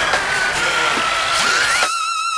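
Dubstep breakdown with no vocal: a synth tone glides slowly down, then sweeps back up near the end over a wash of noise, with the heavy bass held back.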